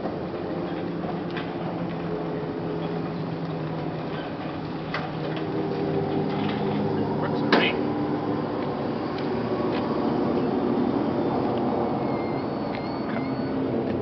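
Electric utility cart towing a train of nine small wheeled trailers: a steady motor hum with rattles and clicks from the trailers, and a sharp clank about seven and a half seconds in.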